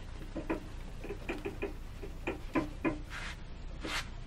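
A cloth rubbed by hand over a waxed, lacquered wooden platter: a quick run of short rubbing strokes, then two longer swishes near the end.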